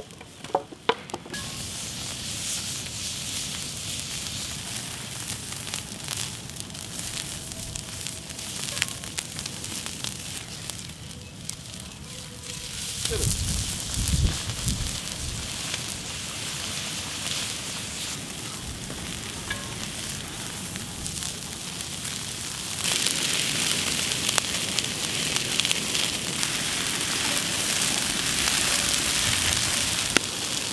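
Coconut milk and rice boiling in green bamboo tubes over an open wood fire, sizzling and spitting where it bubbles over onto the hot bamboo, with the crackle of the burning logs. A brief low rumble comes about halfway, and the sizzling grows louder near the end.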